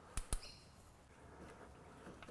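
Two light clicks of hand tools against metal parts under the car, followed by a brief, faint high squeak; otherwise quiet.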